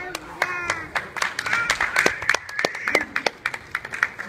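Hands clapping, several sharp claps a second in an uneven run, with a young child's high voice calling out about half a second in.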